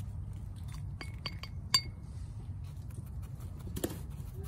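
Four light clinks with a brief ringing tone, in quick succession between about one and two seconds in, the last the loudest, then a single softer knock near the end, over a steady low rumble.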